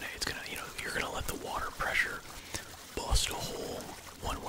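A man whispering close to the microphone in short phrases, with a sharp hiss about three seconds in.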